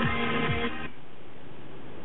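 Electronic dance music with a kick-drum beat playing from an iPhone through a Pioneer AVIC-P4100DVD car head unit, cutting off suddenly about a second in and leaving a steady hiss.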